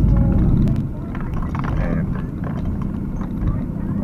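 Engine and road noise of a moving car heard from inside the cabin: a steady low rumble, louder for about the first second and then easing off.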